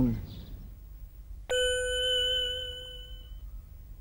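A single bell-like ding sound effect, struck once about a second and a half in and ringing out as it fades over about two seconds.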